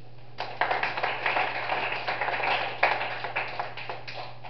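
A small group applauding by hand, starting about half a second in and thinning out near the end.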